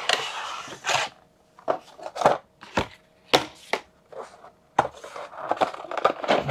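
Cardboard sliding and rubbing as a board-game box comes out of its sleeve, then a string of light clicks and taps from a plastic insert tray and its clear lid being handled.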